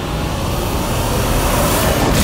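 Dramatic soundtrack effect: a whoosh swelling over a low rumbling score, building to a sharp hit at the very end.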